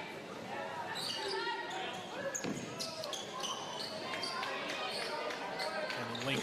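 Basketball court sound on a hardwood floor: a ball bouncing and sneakers squeaking in short high chirps, over voices in a large hall.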